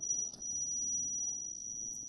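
A steady high-pitched whine, one held tone with faint overtones, over low room noise.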